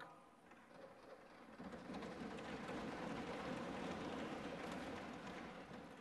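Members of the house applauding in approval, a dense clatter that swells about a second and a half in, holds, then dies away just before the speech resumes.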